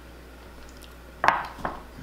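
Two sharp clinks of tableware, a loud one a little past the middle and a quieter one about half a second later, over quiet room noise.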